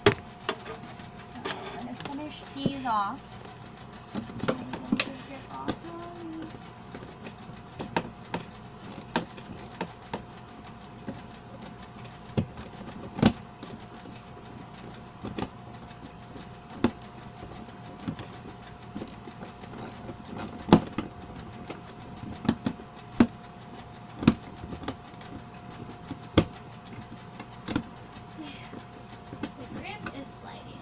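Irregular sharp clicks and clinks of a screwdriver working bolts in a hard plastic wagon bed, metal tapping and scraping against the plastic, over a steady faint tone.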